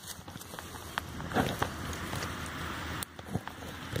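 Footsteps and rustling through dry grass and brush, with many small crackles of dry stems being pushed aside.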